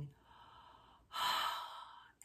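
A woman's deep breath: a faint inhale, then about a second in a louder, long sighing exhale.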